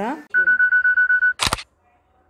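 Mobile phone camera app: a steady high electronic tone for about a second, then a single sharp shutter click as a photo is taken.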